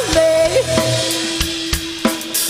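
Live rock band playing a passage without lyrics: drum kit hits (snare, bass drum and cymbals) under one long held note.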